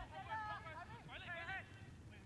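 Distant men shouting on a soccer field: a few short, high, arching calls in two bursts, over low outdoor background noise.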